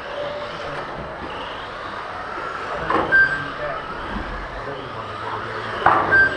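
Electric 1/12-scale GT12 RC cars running on a carpet track: a steady hiss of motors and tyres with brief high whines as cars pass. A sharp knock comes about three seconds in and again near the end.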